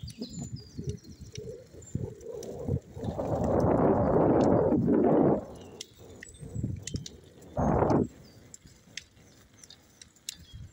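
Bursts of rushing noise on a handheld phone's microphone, loudest for about two seconds midway and again briefly near the end, with faint birds chirping in the background.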